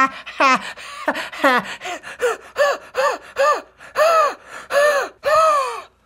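A man laughing hard, a run of about a dozen breathy ha-ha bursts, with the last few drawn out longer.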